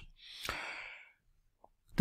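A man's audible breath, lasting about a second, followed by near silence.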